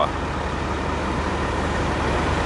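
A motor vehicle engine idling, a steady low hum with a noisy wash over it.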